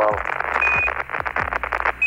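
Crackling static on the Apollo air-to-ground radio link during a data dropout, with a short high Quindar beep about halfway through as the ground's microphone keys off. Underneath are a steady low hum and a slow thudding beat of background music.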